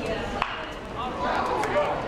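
A single sharp crack of a metal bat hitting a pitched baseball, about half a second in. The crowd chatter gets louder after the hit.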